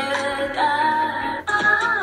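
Electronic music with a singing voice playing loudly from a Lenovo Tab P12 tablet's built-in JBL and Dolby stereo speakers.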